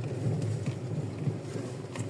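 Car driving along a road, a steady low rumble of engine and road noise.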